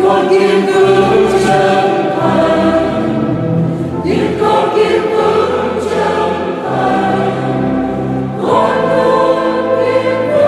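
Mixed choir of men and women singing a Vietnamese hymn in sustained, held phrases, with new phrases entering about four seconds in and again past eight seconds.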